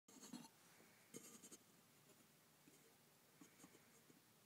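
Near silence, with faint rustling and scuffing from someone handling the camera and moving about. The rustling comes in two short bursts near the start, with weaker taps later.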